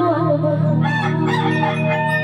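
Live stage music from an amplified band: a sustained low keyboard chord comes in at the start, under a wavering, bending high melody line.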